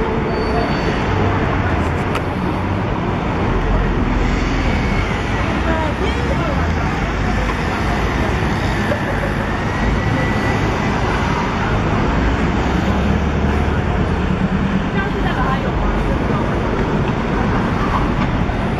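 Busy city street ambience: a steady rush of passing cars and traffic, with indistinct voices of passers-by.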